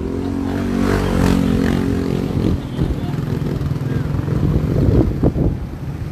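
A motorcycle engine running steadily as it passes close by for the first few seconds, with wind rumbling on the microphone throughout.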